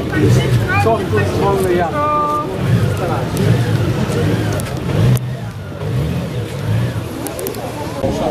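Honda Gold Wing GL1800's flat-six engine running at low speed as the motorcycle is ridden slowly through a cone course, with people talking nearby. A short steady tone sounds about two seconds in.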